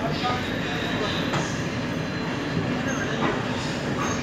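Passenger train pulling out slowly, with the steady running noise of the coaches' wheels on the rails.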